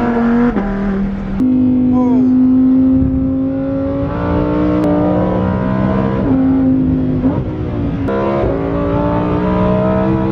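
Sports car engine heard from inside the cabin while lapping a racetrack, its note climbing steadily under acceleration and jumping in pitch several times as it changes gear.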